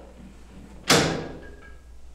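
A heavy jail-cell door banging once, loud and sudden, with a short ringing decay.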